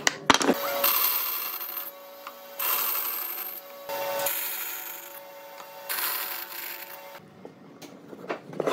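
Band saw cutting wood in several short passes of about a second each, the hiss of the blade in the wood over the machine's steady hum. A few sharp clacks of wood pieces come at the start.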